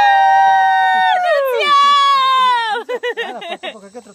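Two high voices shrieking together in long, held cries, then one more long shriek that falls away at its end, followed by quick bursts of laughter. These are excited shrieks as the wedged canoe rocks free of the rock.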